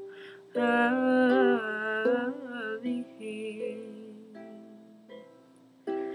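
Ukulele accompaniment with a woman's voice holding a wavering sung note for about two seconds. After that the ukulele plays alone, its plucked chords ringing and fading out.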